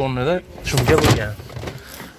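A short scraping, rustling noise from the boot of a car being handled, about half a second in, after a man's brief word.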